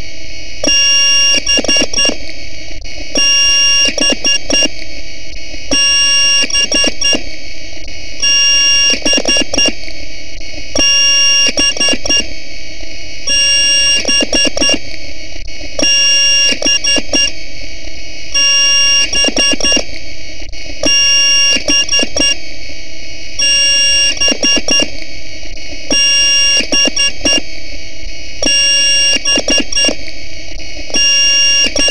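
Loud, heavily distorted electronic effect loop: a harsh buzzing noise throughout, with shrill alarm-like tones cutting in and out about every two seconds.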